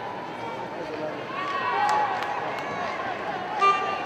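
Arena crowd of spectators shouting and calling out over one another, swelling about two seconds in. Near the end, a short, loud, high-pitched call cuts through.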